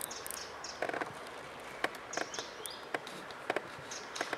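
Short, high bird chirps over a quiet steady outdoor background, with a few sharp clicks scattered through, the clearest about a second in.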